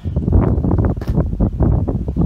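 Wind buffeting the microphone: a loud, irregular low rumble that rises and falls in gusts.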